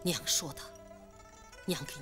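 A woman speaking a short line softly over background music of held plucked-string tones.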